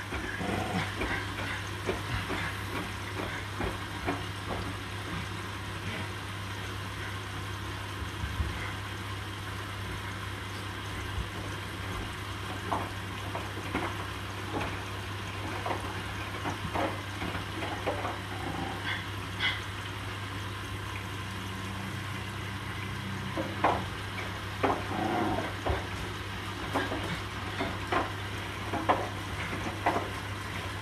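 Hotpoint NSWR843C front-loading washing machine on its final rinse: the drum turns wet laundry through the rinse water, with steady sloshing and irregular splashes and soft thuds of falling clothes over a constant low hum.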